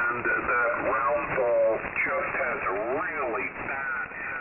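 Amateur-band single-sideband voice heard through the Heathkit HR-10 receiver, demodulated and filtered by SDR software, with the audio cut off sharply above about 2.7 kHz. The voices slide up and down in pitch, sounding off-tune, as the receiver is tuned across the signals.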